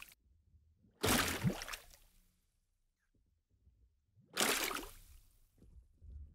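Two short water-splash sound effects about three and a half seconds apart, each fading out in under a second.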